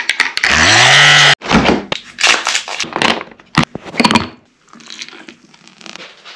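A small handheld electric frother whirs in a glass of coffee for about a second, rising in pitch as it spins up, then cuts off abruptly. It is followed by a series of sharp clinks and knocks of a spoon and glass.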